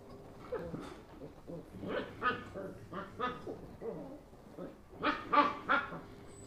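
Puppies play-fighting, giving short pitched yips and whines; the loudest are three quick calls close together about five seconds in.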